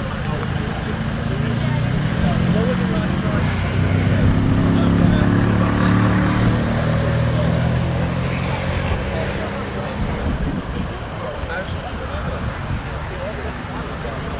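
An engine passes close by, swelling to its loudest about five seconds in and fading away by about ten seconds, over a background of crowd chatter.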